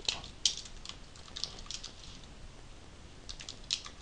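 Typing on a computer keyboard: scattered keystrokes in short irregular runs with pauses between them.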